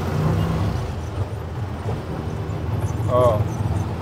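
Auto-rickshaw engine running with a steady low drone, heard from the passenger seat of the open cabin amid street traffic. A brief voice cuts in just past three seconds.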